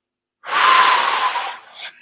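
One long, deep breath through the mouth, close to a headset microphone. It starts about half a second in and lasts about a second and a half.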